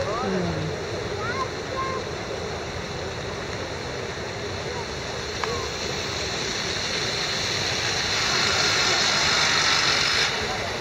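A steady rushing noise with faint, scattered distant voices, growing a little louder over the last couple of seconds.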